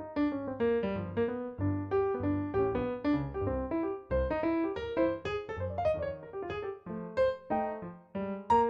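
Digital stage piano played with both hands: a quick, continuous run of struck notes and chords over low bass notes, several notes a second, with a brief dip about four seconds in.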